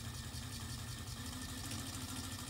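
Small electric motor of a tabletop shake-table model running with a steady low hum as it drives the base to shake the frame.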